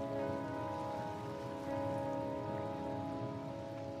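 Soft background music of held, sustained chords that shift once or twice, over a faint steady hiss.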